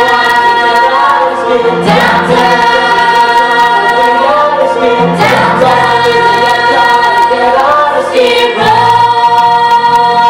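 A musical-theatre chorus singing full-voiced, holding long notes that move to a new chord about every three seconds, with low sustained accompaniment underneath.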